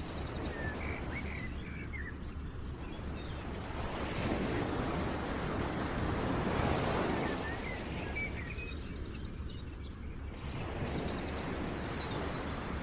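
Outdoor nature ambience: a steady rushing noise that swells in the middle, with short bird chirps and fast high trills about a second in and again around the middle.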